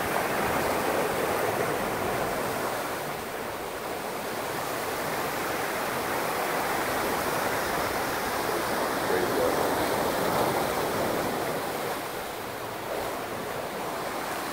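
Ocean surf surging and churning in a rock pit on the shoreline: a steady rush of water that swells and eases slowly.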